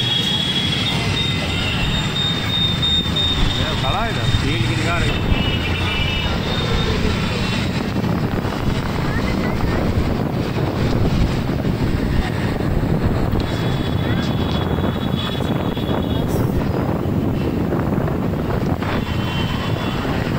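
Steady rumble of a two-wheeler ride through city traffic, with road and engine noise and wind on the microphone, and a few brief high tones.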